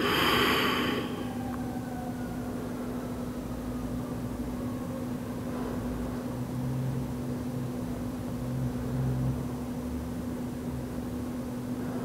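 A person breathing out audibly in a yoga forward fold, one breath in the first second. It is followed by quiet room tone with a steady low hum and a faint low rumble in the middle.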